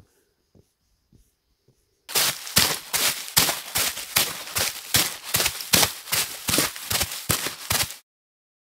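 Footsteps crunching on a gritty concrete path, close to the microphone: faint at first, then loud from about two seconds in at roughly three steps a second.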